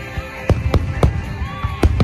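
Aerial firework shells bursting overhead, four sharp bangs in quick succession with a low rumble between them.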